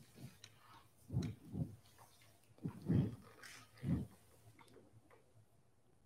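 A person making four short, breathy vocal sounds over about three seconds, with no words, picked up close on a microphone.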